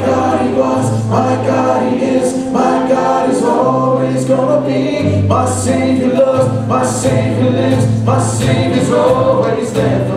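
Live worship band playing a song, with voices singing together over acoustic guitar and keyboard. Held bass notes change every second or so under a steady beat.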